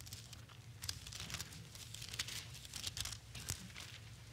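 Thin Bible pages being turned, a run of faint, irregular papery crinkles and flicks over a low room hum.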